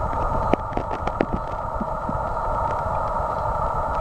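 Outdoor ambience: a steady midrange hum with a rumble of wind on the microphone, and a few light clicks in the first second and a half.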